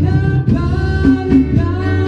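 A small live band playing: a man singing over an electric bass line and steady percussion strikes.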